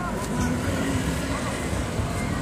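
City street traffic at a crosswalk: a steady low rumble of car engines and tyres, with a car driving across the crossing and faint voices around.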